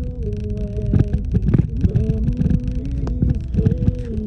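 A vehicle rolling slowly along a gravel dirt road: a continuous low rumble from the engine and tyres, with irregular knocks as it goes over bumps. A low humming tone under it shifts pitch in steps several times.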